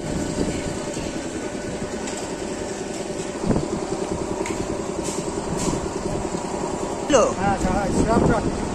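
Electric multiple-unit (EMU) local train running at a station: a steady rumble with several steady motor hum tones, and a single knock about three and a half seconds in. A man's voice starts near the end.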